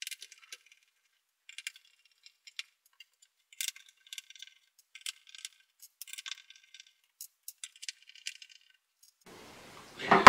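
A small screwdriver undoes the little screws around the edge of a Nissan Leaf plastic headlight housing, and the screws clink as they are set down. It comes through as faint, irregular light clicks and small metallic clinks.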